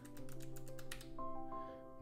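Computer keyboard typing: a quick run of keystrokes in the first half, over soft background music of held notes that change about halfway through.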